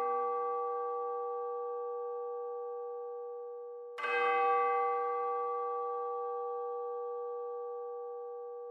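A large bell ringing: a stroke rings on and fades slowly, then a single new stroke lands about four seconds in and rings down in the same slow way.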